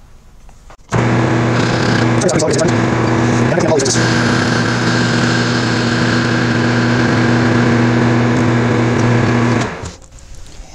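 Metal lathe starting about a second in and running steadily with a hum and a hiss, turning down a steel boring head shank with a carbide tool; it stops just before the end.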